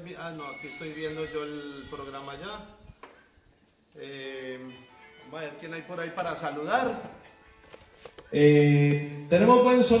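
A man's voice with electronic keyboard music, broken by a short near-silent pause about three seconds in. Near the end the voice becomes much louder, picked up close on a handheld microphone.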